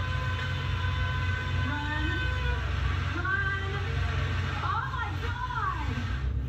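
Heavy roadwork equipment running with a steady low rumble, under a long horn-like tone for the first half and wordless shouting voices that rise and fall about five seconds in, heard through a television speaker.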